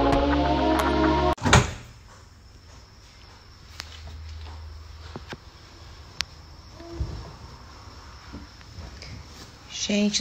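Background music that cuts off about a second in, then a single loud knock, followed by quiet handling with a few light clicks as dry towels are pulled out of a front-loading tumble dryer's drum.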